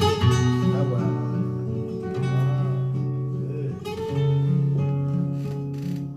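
Flamenco guitar playing an instrumental passage of a habanera between sung verses: full strummed chords, one at the start and one about four seconds in, with single notes and bass notes ringing on between them.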